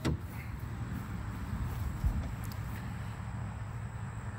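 A sharp click as the Polaris Ranger's dump-bed latch is released, then the plastic cargo bed being tilted up, with a smaller knock about two seconds in. A steady low rumble runs underneath.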